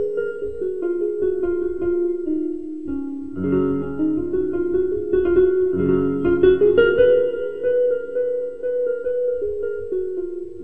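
Casio electronic keyboard played solo in a Hindustani classical style: a quick melody line over held lower chords, with fresh chords struck about three and a half and six seconds in.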